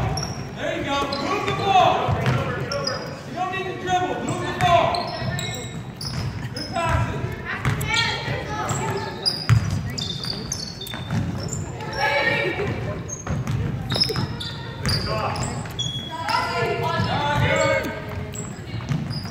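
Basketball being dribbled on a hardwood gym floor, with short high sneaker squeaks and the shouting and chatter of players and spectators, echoing in the large hall.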